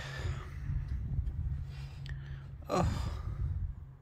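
A man lets out a tired, drawn-out sigh ('oh') about three seconds in, over a steady low background hum.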